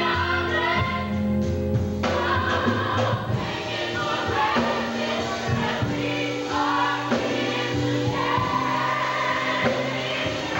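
Youth gospel choir singing, several voices together in sustained, bending lines over held low notes.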